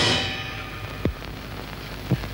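A metallic crash from a dramatic film-score sting, ringing in many tones and fading over the first half second or so. A single short thump follows about a second in.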